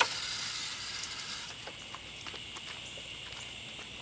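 Garden hose water running with a faint hiss that fades over the first second or so, followed by a few light scattered taps.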